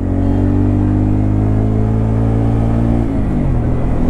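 Bajaj Pulsar N250's single-cylinder engine running under way, its pitch sinking slowly as the revs ease off, then dropping more sharply about three seconds in before settling at a lower steady note.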